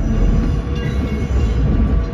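Metra Electric double-deck electric train rolling slowly along the track, a steady low rumble.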